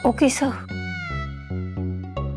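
Background score for a TV drama: light music over a steady bass pulse. It opens with a short high cry that sweeps down in pitch several times, followed by a long held tone that slides down and levels off.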